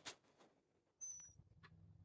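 Near silence: a soft breath at the start, then a short, faint, high squeak that falls slightly in pitch about a second in, after which a low steady hum of room tone sets in.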